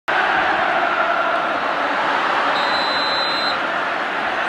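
Sound effect for an animated sponsor-logo intro: a loud, steady rushing noise that starts abruptly. A thin high tone sounds for about a second in the middle.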